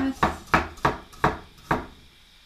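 Square-bladed vegetable knife chopping a carrot on a cutting board: five sharp knocks of the blade on the board, about three a second, stopping shortly before the end.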